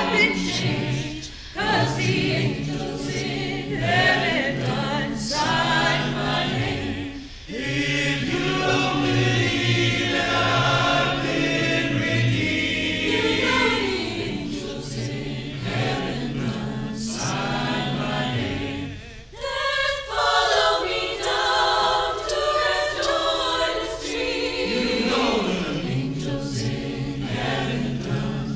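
Mixed-voice choir singing, made of separately recorded vocal parts blended into one virtual choir. The singing dips briefly in loudness about 19 seconds in, then carries on.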